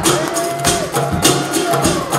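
Live music from a cigar box guitar band: held notes that bend in pitch over a steady percussion beat of about four hits a second.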